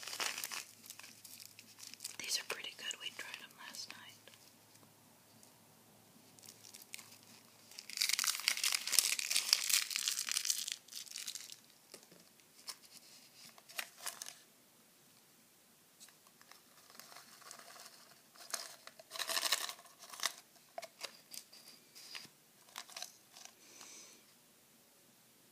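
A candy tube's wrapper being torn open and crinkled by hand: scattered crinkles, then one long loud rip lasting about three seconds a third of the way in, and more short crinkles near the end.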